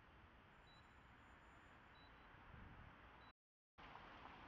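Near silence: a faint steady hiss with a very faint short high beep recurring about every second and a half. The sound drops out completely for about half a second near the end.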